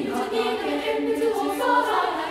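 Girls' choir of about fifty junior high students singing in parts without accompaniment, a choral arrangement of Japanese warabe-uta (traditional children's songs) for female voices, with held notes moving from pitch to pitch.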